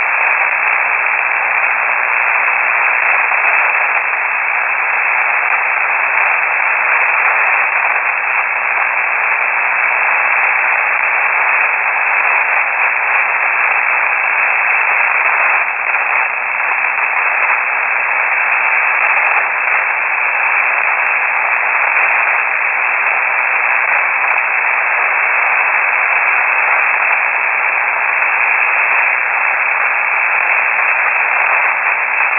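Steady hiss and static from a KiwiSDR shortwave receiver in upper-sideband mode, tuned to an idle HF aeronautical channel on 3476 kHz with no transmission present. The noise is confined to a narrow voice-channel band, which gives it a thin, boxy sound.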